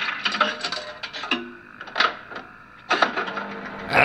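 Jukebox sound effect from an effects record: mechanical clicks and several sharp knocks over faint steady tones.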